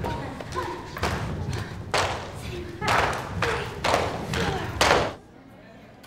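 Group aerobics workout: feet thudding on the floor and voices calling out. There are loud hits about every half second to a second, and they stop abruptly just after five seconds in.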